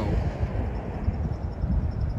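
Outdoor street background: a low, uneven rumble of wind buffeting the microphone, mixed with traffic on a nearby road.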